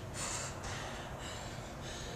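A woman breathing hard between power-snatch reps, short forceful breaths about twice a second from the exertion of the workout.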